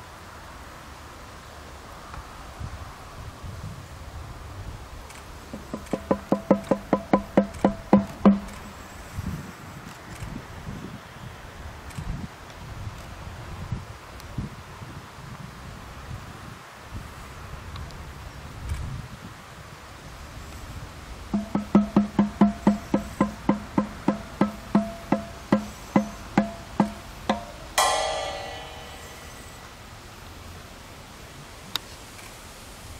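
Live hand percussion: two runs of rapid, even, pitched knocks, several a second, the second run longer. Near the end comes a single metallic cymbal crash that rings and fades away.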